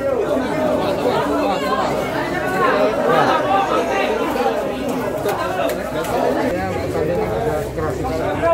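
Several voices talking over one another in a cluster of people, indistinct overlapping speech.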